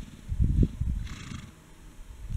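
A horse making a low, rumbling sound about half a second in, followed shortly after by a short breathy blow through the nostrils.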